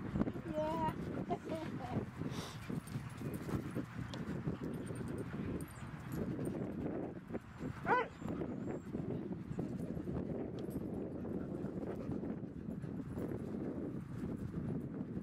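Dogs vocalizing at close quarters: a small dog growling warnings at a husky that keeps pushing in on him to play. There are short whining cries near the start and one sharp, high yelp a little past the middle.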